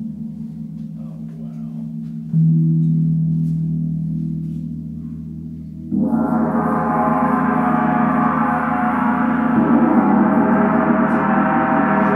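32-inch Paiste Planet gong tuned to Chiron (D#2), struck with a felt mallet. A soft stroke about two seconds in rings low, then a much harder stroke about six seconds in opens the gong into a loud, bright shimmering wash that keeps building and ringing.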